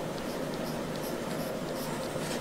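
Drawing pencil scratching in light, intermittent strokes on paper, over a steady room hum.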